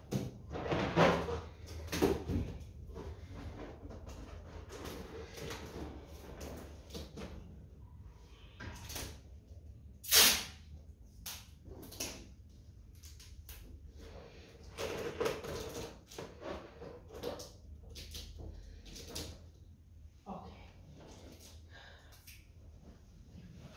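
Irregular handling noises as party balloons are pressed and fixed onto a framed picture on the wall: rubbing, rustling and light knocks, with one sharp louder burst about ten seconds in.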